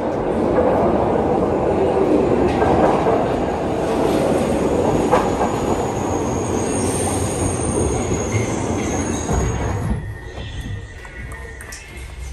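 Glasgow Subway train pulling into the platform: a loud, dense rumble of steel wheels on the rails, with a high, thin squeal for about three seconds around the middle as it slows. The noise drops off about ten seconds in.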